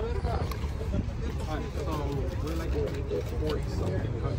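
Background voices talking over a low, steady rumble of idling vehicles.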